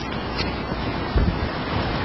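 Steady background hiss of room and recording noise, with a soft low thump a little after a second in.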